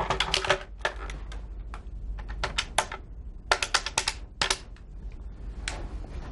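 A telephone being dialed: short runs of rapid clicks, in several groups with pauses between them.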